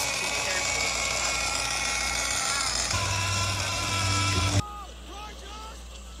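Animated-film soundtrack heard through a TV: a dense rushing sound of the ocean current with steady held tones, joined by a low hum about three seconds in, that cuts off suddenly about four and a half seconds in to a quieter bed with short gliding chirps.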